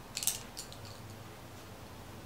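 A few light clicks of makeup brushes being handled, their handles knocking together: a quick cluster about a quarter second in, then two fainter clicks.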